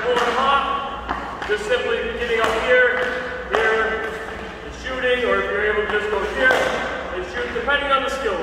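Hockey stick blade knocking a puck on the ice, about a dozen sharp clacks at an uneven pace during a stickhandling drill, with a person's voice-like pitched sound running underneath.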